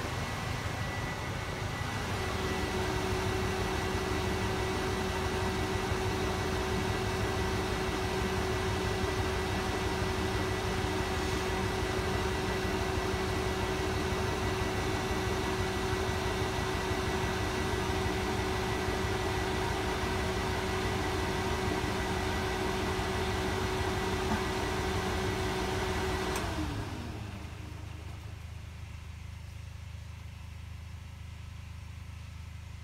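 Indesit washing machine on spin, its motor giving a steady whine as the drum turns. About 26 seconds in the motor cuts and the whine falls away as the drum slows: the spin is halted by a suds lock from too much foam in the drum.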